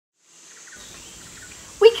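Faint steady outdoor ambience fades in after a brief silence, with a thin, high, steady tone running through it; a woman's voice starts speaking near the end.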